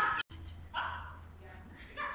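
A small dog barking, two short barks about a second apart.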